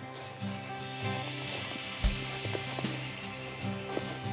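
Soft background music with held notes, with a single low thump about halfway through.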